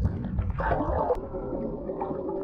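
Muffled underwater sound picked up by a camera below the surface: a low rumble of moving water with gurgling, louder from about half a second in.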